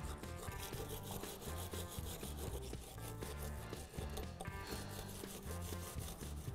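Wire brush scrubbing rust and buildup off a steel brake caliper slide clip, in quick repeated scraping strokes.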